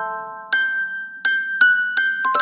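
Music box playing a slow, gentle melody: bright plucked notes that ring on and fade, a new note coming about every half second.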